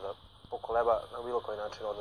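Speech only: a person talking, after a brief pause at the start.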